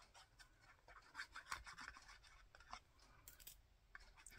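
Near silence with faint rubbing and scratching as the tip of a liquid-glue squeeze bottle is worked across the back of a paper doily, with a few light paper-handling ticks.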